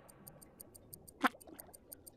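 Cartoon sound effect of rapid, even ticking: faint, high-pitched ticks at about seven a second.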